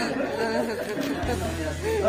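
Indistinct talking and chatter from several people, with a low steady hum coming in just over a second in.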